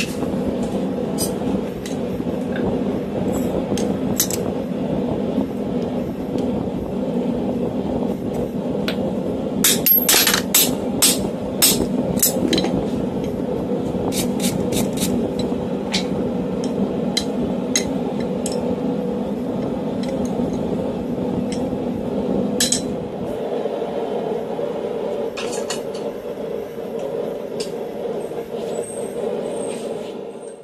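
Hand hammer blows ringing on the steel top die of a guillotine tool on hot bar stock, a scattered run of sharp strikes thickest about ten to sixteen seconds in, over a steady hum. The lowest part of the hum drops away near the end.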